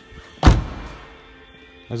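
An Audi A1's tailgate shut with one loud thunk about half a second in, dying away quickly.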